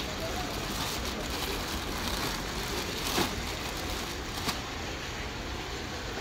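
Steady background noise of a busy exhibition ground with faint voices, and two brief crinkles of the plastic wrapping on bags being handled, about three and four and a half seconds in.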